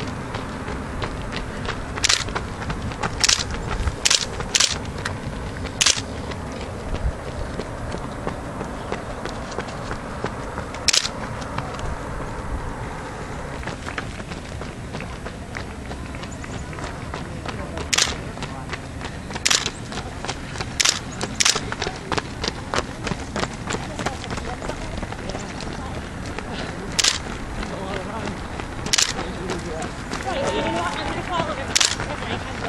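Steady outdoor noise as runners pass on a paved road, broken by about a dozen sharp, irregular snaps that are the loudest sounds.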